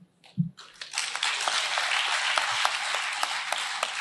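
Audience applauding, starting about half a second in after a brief hush and then going on as a steady patter of many claps.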